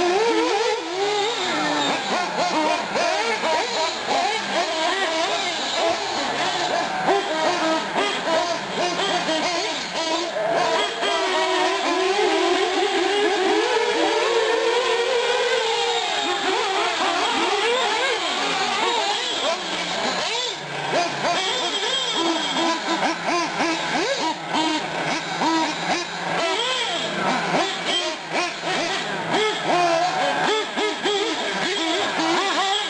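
Several 1/8-scale nitro R/C car engines racing around a dirt track, their high-pitched whines overlapping and constantly rising and falling as the throttles open and close.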